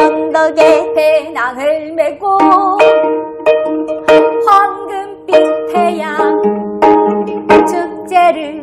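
Two gayageums (Korean plucked zithers) playing a lively pop-song accompaniment with ringing plucked notes, under a woman singing the melody.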